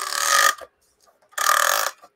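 Vintage rotating cake stand turned by hand: two rough grinding scrapes from its turntable base, each about half a second long, a second apart.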